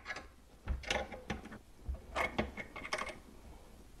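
Small wrench working a faucet's mounting nut under a sink: irregular metal clicks and scrapes, several over the few seconds, as the nut is tightened by hand.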